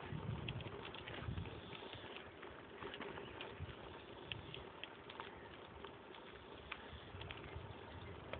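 Faint outdoor ambience: wind on the phone microphone as an uneven low rumble, with scattered light, irregular clicks.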